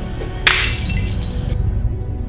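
A glass object smashing on a hard tiled floor about half a second in, the shards scattering and tinkling for about a second before dying away, over background music.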